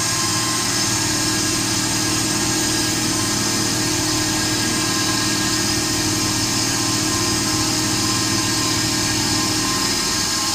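Titan TM20LV mini milling machine's spindle running steadily under load as a milling cutter cuts the edge of an aluminium bar, a constant machine hum with a steady whine over it.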